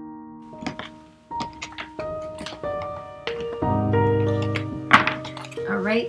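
Soft piano music with several short knocks and taps of a deck of tarot cards against a wooden floor. The sharpest knock comes about five seconds in.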